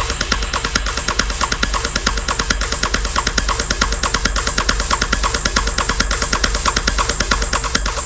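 Techno music from a DJ mix: a fast, even run of clicking percussion, about eight ticks a second, over a steady deep bass.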